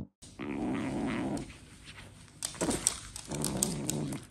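A pet animal growling low: one growl of about a second near the start, then more short growls in the second half.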